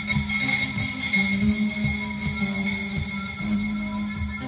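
Live electronic music from a Dave Smith Instruments Tempest analog drum machine and synth sequenced from an Arturia BeatStep and run through a mixer and effects pedals: a sustained drone on steady pitches with low drum hits underneath, picked up by a camera microphone in the room.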